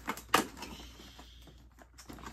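Cardboard door of a chocolate advent calendar being pushed open: one sharp click about a third of a second in, with a fainter one just before it, then faint rustling.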